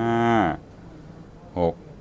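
A man counting aloud in Thai, drawing out "five" (ห้า) for about half a second with falling pitch, then a short voice sound near the end.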